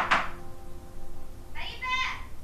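A person's high-pitched voice calling out a name near the end, after a short burst of noise at the very start.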